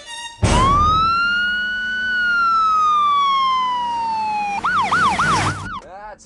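Ambulance siren. It winds up sharply, then makes one long wail that slides slowly down in pitch. It breaks into a fast yelp of about three or four swoops a second and is switched off abruptly near the end.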